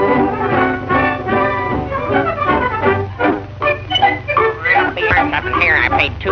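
Orchestral cartoon score led by brass, holding sustained chords, then breaking into shorter, choppier phrases about two seconds in.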